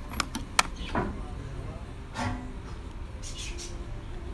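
A few sharp metallic clicks and clinks in the first second, made by a socket wrench and the car battery's negative cable being handled, over a steady low background hum.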